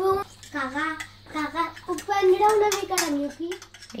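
A young child vocalizing in a sing-song voice without clear words, with a few light clinks of a fork on a ceramic plate as she beats egg.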